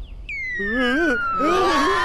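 Cartoon falling whistle: one long whistle gliding steadily down in pitch from about a quarter second in, the sound effect for characters dropping out of the sky. Several cartoon voices shout over it from about half a second in.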